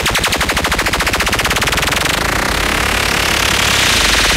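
Electronic dance music build-up in a DJ mix: a rapid drum roll that speeds up until the hits blur together about halfway through into a sustained noise sweep, with the full beat coming back in near the end.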